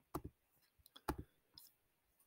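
A few faint computer mouse clicks, each a quick double stroke, about a second apart.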